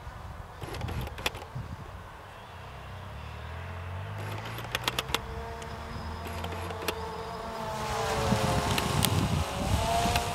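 Multirotor drone's propellers humming overhead, the hum wavering in pitch and growing louder toward the end as it manoeuvres, over wind rumbling on the microphone and a few handling clicks.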